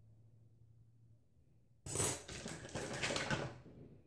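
Small plastic perm rods clattering and rattling against each other as one is picked out of a pile, a dense run of clicks that starts about two seconds in and lasts under two seconds.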